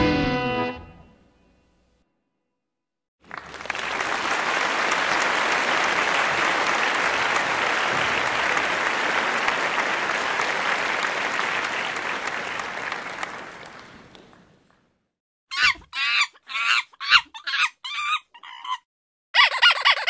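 A steady wash of applause-like noise lasting about eleven seconds, then a string of short squawking calls, like a chicken or other fowl, near the end.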